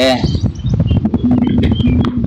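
A man's voice ending a word, then a long held hesitation sound from a bit past the middle, over a steady low rumble.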